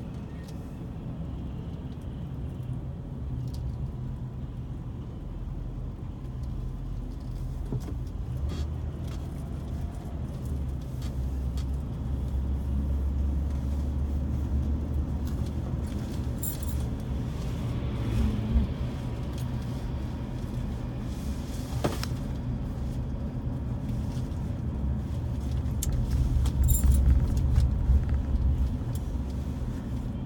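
Steady low rumble of a car's engine and tyres heard from inside the moving car, louder in the middle and again near the end, with a few light clicks and rattles.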